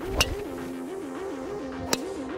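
Two sharp cracks of a driver striking a Quantix golf ball off the tee, about a second and a half apart: the same drive heard twice. Background music with a repeating bouncy bass line plays underneath.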